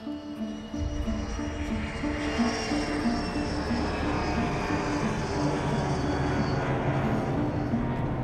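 A jet aircraft passing low overhead. A deep rumble builds in about a second in and holds, with a thin high whine that slowly falls in pitch.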